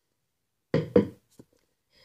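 A short double knock, two quick hits close together about three-quarters of a second in, followed by a faint tick: an unwanted noise.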